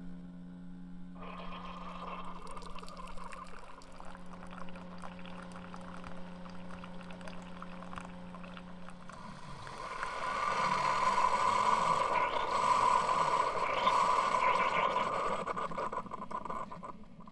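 Keurig single-serve coffee maker brewing: a steady low machine hum under the sound of coffee streaming into a glass mug. The hum stops about nine seconds in, and the pouring gets louder for the last several seconds.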